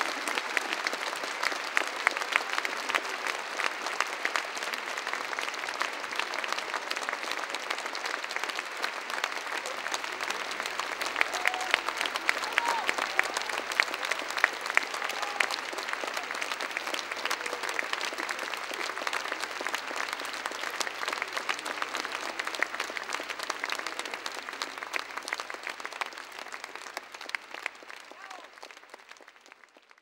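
Audience applauding: dense, steady clapping with a few shouts mixed in, fading out near the end.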